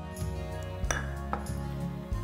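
Gentle guitar background music, with two sharp clinks about a second in, half a second apart: a glass jar and a spatula knocking against a glass mixing bowl.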